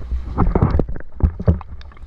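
Irregular close knocks and thumps of a person climbing wet wooden ladder steps in a wetsuit, about half a dozen in two seconds, over a low rumble of camera handling on the microphone.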